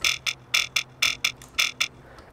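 Jump-up drum & bass synth bass patch from Serum playing a choppy, talking-style pattern of short stabs, about four a second. A high-pass EQ at around 380 Hz cuts the bottom end, so the stabs sound thin and buzzy.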